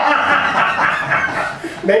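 Laughter: a burst of chuckling that fades about a second and a half in.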